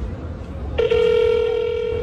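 Ringback tone of an outgoing call on a smartphone held on speaker: one steady electronic ring that starts a little under halfway in and lasts about a second, the call not yet answered.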